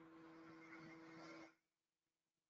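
Near silence: faint room hiss with a steady low hum from an open call microphone, cutting off to dead silence about one and a half seconds in.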